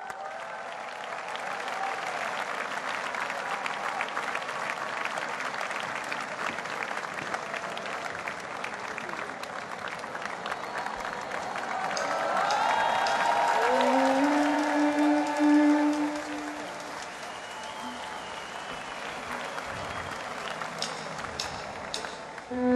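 Large audience applauding steadily, with a few held musical notes sounding over the clapping about two-thirds of the way through.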